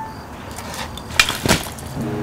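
Several sharp cracks and knocks, the two loudest a little past one second in: a mountain bike and its rider crashing down into brush after going off a cliff.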